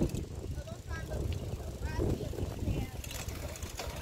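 Wind and handling noise on a handheld phone's microphone during a bicycle ride, a low, uneven rumble.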